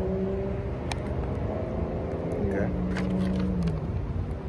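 A white paper takeout bag being handled and turned over, giving a few sharp paper crinkles, over a steady low hum and rumble.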